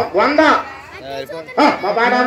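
A man's voice calling out loudly over a microphone and loudspeaker in two short bursts, with quieter voices in between.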